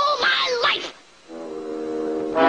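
A cartoon duck's voice exclaiming for just under a second, then after a short gap a steady, low horn-like note held on one pitch begins about a second and a half in.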